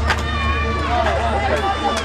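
People's voices, one a drawn-out high call, over a steady low hum.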